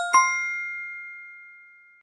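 A bell-like chime sound effect: two quick strikes a fraction of a second apart, then a clear ringing tone that fades slowly away.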